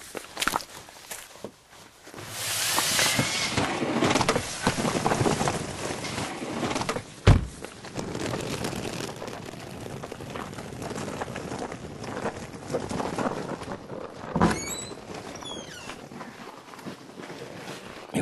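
Footsteps and ski gear being handled and carried, in an uneven shuffle of noise. A single sharp, loud knock about seven seconds in is the loudest moment. About fourteen and a half seconds in comes a thud followed by short high squeaks.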